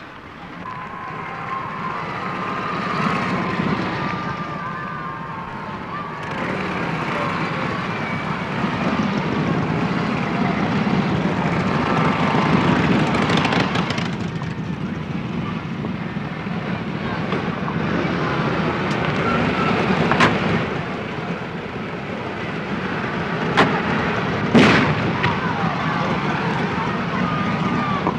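Noisy outdoor location sound of motorcycle and car engines running, with indistinct crowd voices. A few sharp knocks come in the second half, the loudest about three-quarters of the way through.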